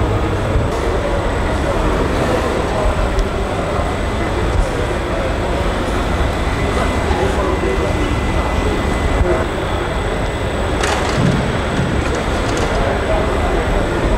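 Indistinct voices talking over a steady mechanical drone, with a sharp click about eleven seconds in.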